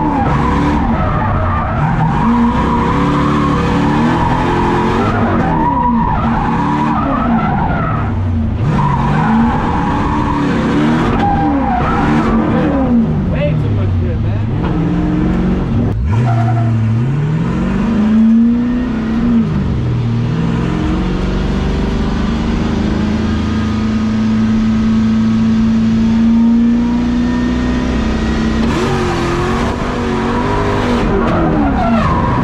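V8-swapped BMW E30 drifting on track, heard from inside the cabin: the engine revs climb and fall again and again through the transitions, over continuous tire squeal from a fresh set of tires being broken in. Past the middle the engine holds steady high revs for several seconds through a long slide.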